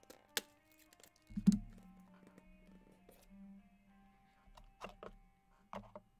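A cardboard trading-card box being handled and cut open with a blade: a sharp click, then a dull thunk about a second and a half in, the loudest sound, and a few more clicks near the end. Quiet background music with held notes runs underneath.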